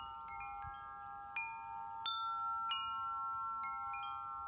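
Metal chimes ringing softly: about eight light strikes at uneven intervals, their tones overlapping and ringing on as a steady chord.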